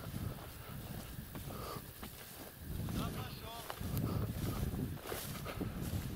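Wind rumbling on the microphone outdoors, with a brief faint voice about three seconds in.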